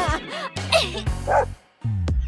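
Background music with a dog barking twice as a sound effect, about half a second apart, matched to a cardboard toy dog. The music drops out for a moment near the end.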